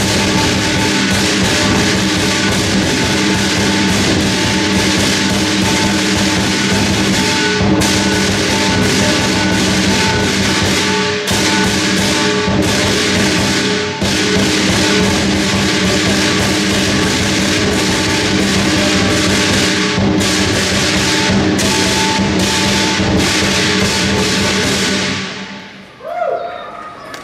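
Lion dance percussion ensemble of drum, cymbals and gong playing continuously, with the metal ringing throughout. It dies away near the end.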